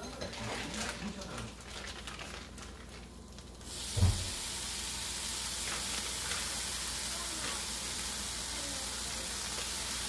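Strips of bacon sizzling on a hot nonstick griddle. About four seconds in, a soft thump as a raw strip is laid down, and a steady, louder sizzle starts at once and carries on.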